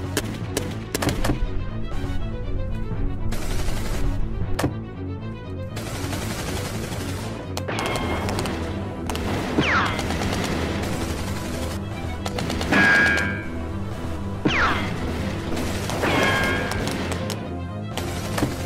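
Shootout gunfire from pistols and rifles, rapid shots densest in the first few seconds and then more scattered, with a few quickly falling whines later on, over background music.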